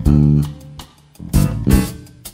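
Live samba-jazz band playing accented ensemble hits: a loud low chord from bass and piano at the start, then two cymbal crashes from the drum kit about a second and a half in, with brief lulls between.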